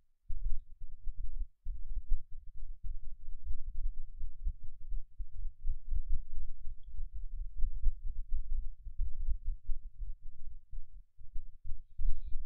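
Low, uneven rumble picked up by the microphone, with nothing higher in pitch, briefly cutting out near the start.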